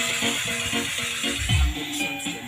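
Music playing through a 2.1 speaker set, a 'bazooka' subwoofer cabinet with two satellite speakers: a quick run of notes, with a deep bass hit about a second and a half in.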